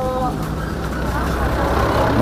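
A motor vehicle engine running steadily as a low rumble, under the voices of a crowd.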